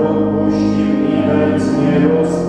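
A group of voices singing a hymn together in long, held notes, with the hiss of sung consonants breaking in now and then.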